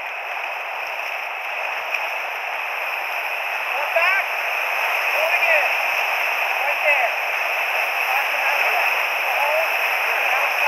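Whitewater rapid rushing around a raft, a steady roar of churning water that grows louder as the raft runs into the rapid. Brief faint voices call out over it a few times.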